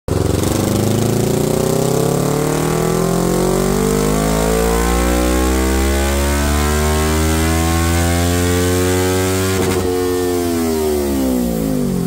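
2024 Kawasaki Ninja 500's parallel-twin engine, through an M4 exhaust, making a dyno pull: the revs climb steadily under full load for about nine seconds, then the throttle closes and the revs fall away.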